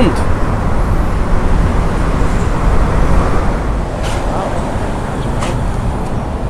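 Street traffic noise: a steady low rumble of passing vehicles.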